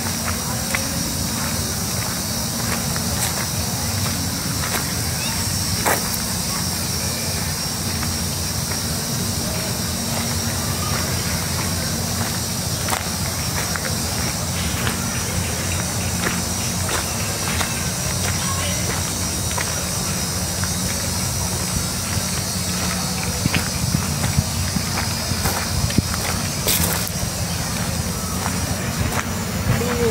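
Footsteps crunching on dry leaf litter, with many small irregular ticks over a steady background hum.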